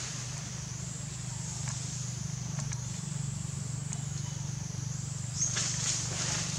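Steady outdoor background: a continuous low hum and a high, even hiss, with a few faint clicks.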